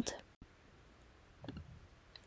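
A quiet pause in a voice-over recording: faint room hiss, with a few soft clicks about one and a half seconds in.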